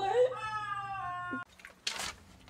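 A person's long, high-pitched, drawn-out "what?", held for about a second and a half and sliding slowly down in a cat-like wail, then cut off abruptly. A brief noisy burst follows near the end.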